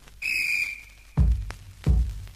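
A single short high piping quena note, sliding slightly down as it fades. About a second later come two deep drum strokes, about two-thirds of a second apart, opening a piece of Andean-baroque ensemble music.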